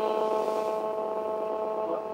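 A steady electronic tone of several pitches held together without change, over a faint hiss.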